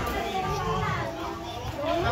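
Party chatter: several people talking at once, children's voices among them.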